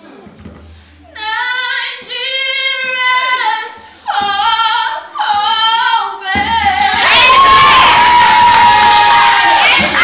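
A young woman singing unaccompanied in short phrases. About seven seconds in, a group of women breaks into loud cheering and shouting over a held high note.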